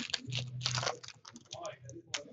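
Trading cards and packs being handled by hand: a quick, dense run of dry clicks and snaps as cards are flicked through, busiest in the first second.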